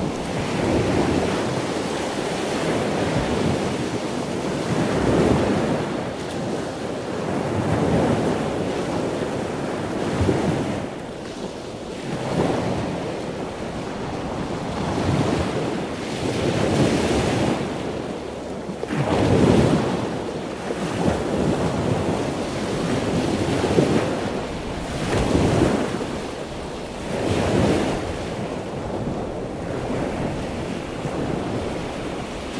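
Water in the sea turtle rehab tanks, heard as a loud rushing and sloshing noise that swells and fades irregularly every few seconds.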